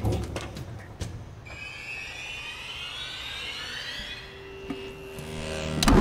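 Film soundtrack and sound effects: sharp percussive hits in the first second, then several rising whines climbing together for a few seconds, and a loud, deep surge near the end as a glowing sci-fi device starts up.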